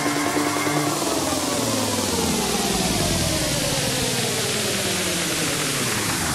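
Psytrance breakdown: layered synth tones slide steadily downward in pitch over a wash of noise, without a heavy kick drum.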